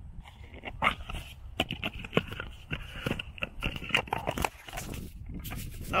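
Handling noise from a small tin of nine-volt batteries being opened and a battery taken out: a run of irregular clicks, taps and rattles over a steady low rumble.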